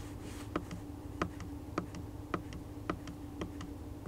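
Short plastic clicks of the Ram 1500's steering-wheel menu buttons being pressed, about six evenly spaced presses, one every half second or so, over a steady low hum from the idling V8.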